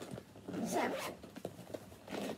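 Zipper on a clear plastic travel pouch being pulled open, a quick run of small ticks.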